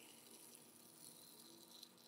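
Near silence, with a faint trickle of filtered methanol solution running from a filter funnel into a glass beaker.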